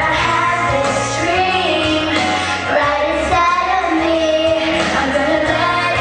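A young girl singing a pop song into a handheld microphone over backing music with a steady beat.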